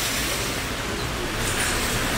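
Steady rain falling on pavement: an even, continuous hiss.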